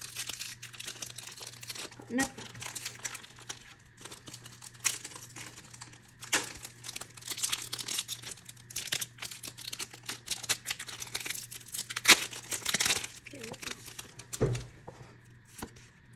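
Foil wrapper of a Pokémon card booster pack being torn and peeled open by hand, a pack that is tough to open: irregular sharp crinkling and tearing crackles throughout, loudest about twelve seconds in.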